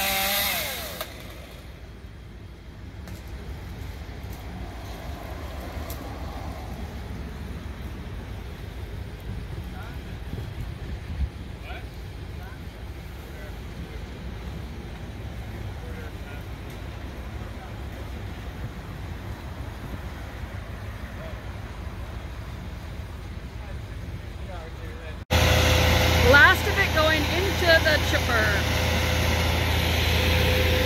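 A chainsaw runs in a short loud burst at the start, then a low engine rumble continues at a lower level. Near the end a louder, steady engine hum with a held tone starts suddenly.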